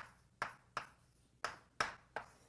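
Writing on a board: a pen or chalk knocks against the surface in five short, sharp taps at uneven spacing over about two seconds, with near silence between them.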